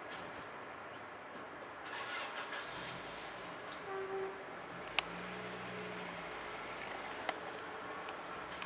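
Steady outdoor background noise of distant road traffic, with a vehicle hum swelling briefly near the middle and two sharp clicks.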